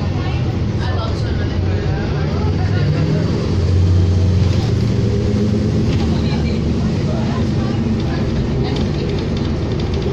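Inside a 2007 New Flyer D40LFR diesel city bus under way: the engine runs with a steady drone that pulls harder and rises a little in pitch, loudest about four seconds in.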